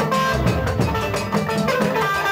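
Live band music: steady drumming with a bright melody line over it.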